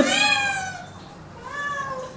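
Domestic tabby cat meowing up at a plate of chicken held just out of reach, begging for food. One long, slightly falling meow, then a second, fainter, shorter meow near the end.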